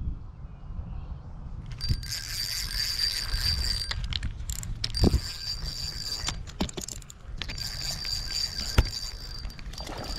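Spinning fishing reel being cranked, its gears giving a steady high whir in three stretches with short pauses and a few sharp clicks, starting about two seconds in. Low wind rumble on the microphone underneath.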